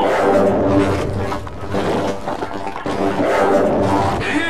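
Heavily distorted, effects-processed music: many steady tones layered together, with no clear words.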